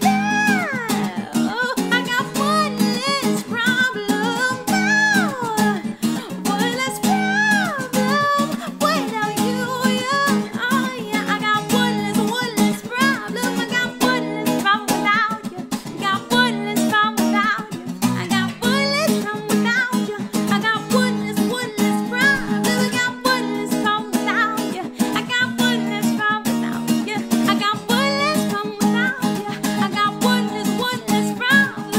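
A woman singing a pop melody over a strummed acoustic guitar, with long swooping vocal notes in the first few seconds.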